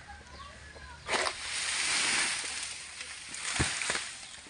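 A frond cut from a tall oil palm with a long-pole sickle comes down: about a second in, a sudden rustling crash through the fronds that lasts a couple of seconds, then one heavy thud as it hits the ground.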